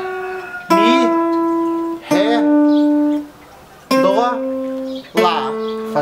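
Hollow-body archtop guitar playing single notes of the A minor 6 pentatonic scale: four notes, each held about a second, stepping down in pitch.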